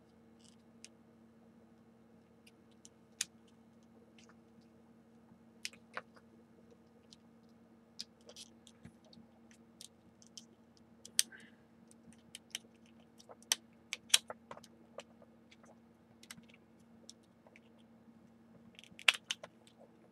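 Scattered sharp plastic clicks and small knocks as hands pry a snap-on armor piece off the back of a plastic action figure, coming thicker around the middle and again near the end. A faint steady hum runs underneath.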